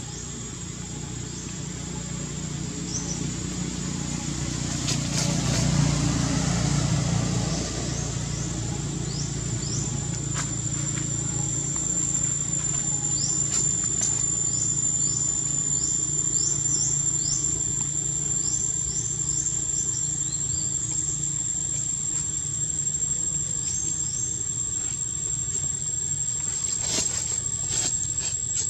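Outdoor insect drone: a steady, high-pitched whine with many short rising chirps over it. Under it is a low rumble that swells and peaks about six seconds in, then settles.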